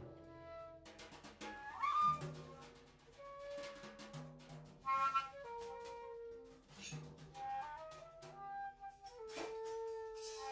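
Free-improvised live music: two transverse flutes play held and sliding notes, one note gliding upward about two seconds in and a low note held near the end, over scattered drum and cymbal hits.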